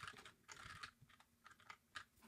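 Faint typing on a computer keyboard: a quick run of key presses in the first second, then a few scattered single keystrokes.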